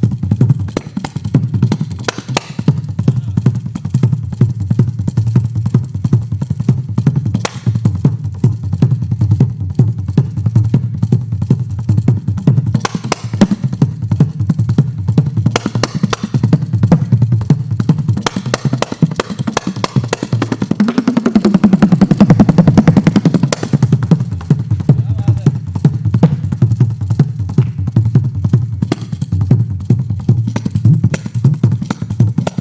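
Kanjira, the South Indian frame drum with a single pair of jingles, played by hand in fast continuous strokes. About two-thirds of the way in, the drum's pitch bends down and back up.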